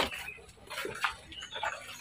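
Faint animal calls, a click at the start and scattered short background sounds.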